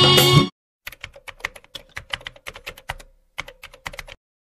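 Song music cuts off abruptly half a second in, followed by rapid computer-keyboard typing clicks, about six a second, a typing sound effect for on-screen text. The typing breaks briefly about three seconds in, then resumes.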